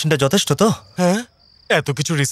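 Men's voices talking, with a faint, high, steady cricket trill heard in a short pause between the lines.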